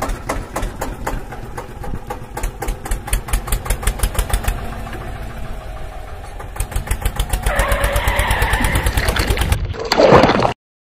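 Tractor engine chugging in a fast, even beat that quickens and grows louder after about six and a half seconds. A rushing, splashy noise joins in for the last couple of seconds.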